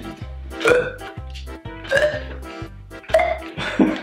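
Background music with a steady beat, over three or four short burp-like noises about a second apart as the toy dog's red bulb pump is squeezed.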